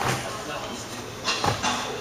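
Feet landing on a wooden plyometric box in a seated box jump: a thud right at the start. About a second and a half in there is another thud with scuffing as the athlete steps off the box onto the floor.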